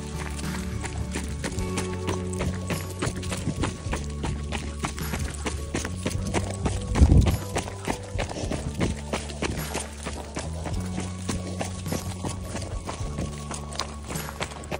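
Background music with steady held tones, over quick, regular footfalls of running on a gravel path, and a low rumbling bump about halfway through.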